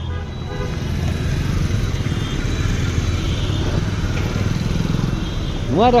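Busy street traffic heard from a moving vehicle: a steady low engine and road rumble, with faint horns tooting in the middle.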